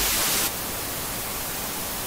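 Television static: a steady white-noise hiss, loudest for the first half second and then a little quieter. It is the sound of a TV receiving no picture signal.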